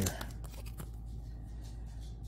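Faint handling of a stack of trading cards by hand, with a few soft slides and clicks in the first second as cards are moved through the stack, over a low steady hum.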